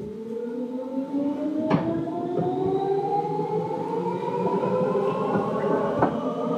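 Seibu 2000 series electric train pulling away, its traction motors whining in several tones that climb steadily in pitch as it gathers speed, with a sharp knock about two seconds in.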